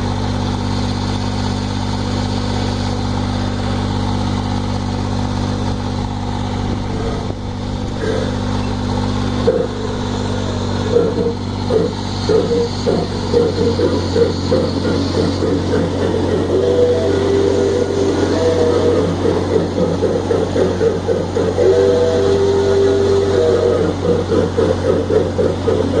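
Pickie Puffer miniature train running on its track, heard from on board. For the first ten seconds or so its motor gives a steady hum. After that a fast, regular rhythmic clatter takes over and keeps going, with a couple of short held tones near the middle and later on.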